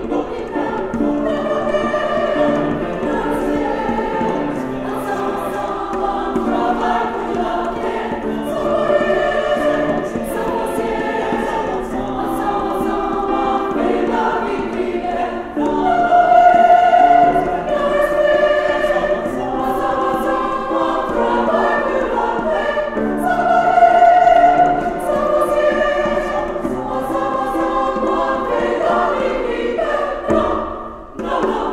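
A women's choir singing sustained chords in several parts, swelling louder about halfway through and again near the three-quarter mark.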